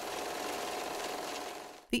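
A steady, fast mechanical rattle with a faint hum under it, used as a transition sound effect, fading out near the end.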